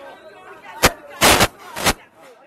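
Three sudden loud bangs amid crowd voices: a short one a little under a second in, a longer, loudest one just after, and a third near the end.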